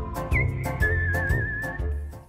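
Background music: a whistled melody over a steady beat and bass.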